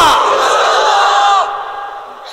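A man's loud, drawn-out shout through a PA system, held on one pitch for about a second and a half and then fading away.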